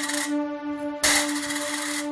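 Background music with a steady held tone, broken by two sharp metallic clinks with a short ring, one at the start and one about a second in: coins dropped into a steel plate.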